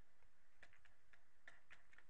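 Faint, irregular ticks and taps of a stylus on a drawing tablet as a word is handwritten, about half a dozen over the two seconds, over a low steady hiss.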